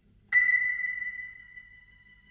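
A bell-like chime struck once about a third of a second in, ringing a single high note with a few higher overtones and fading slowly.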